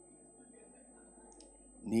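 A faint pause with only a low steady hum and a soft click, then a man's voice speaking into a handheld microphone starts abruptly near the end.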